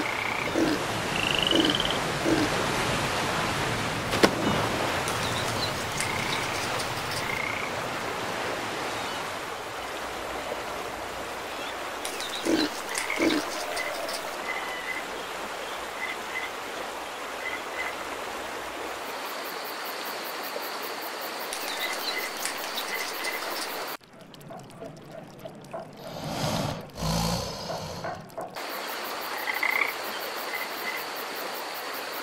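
Sound-effect ambience: a steady wash of sea waves with scattered short bird chirps. About two-thirds of the way through it gives way to a chorus of chirping crickets and croaking frogs.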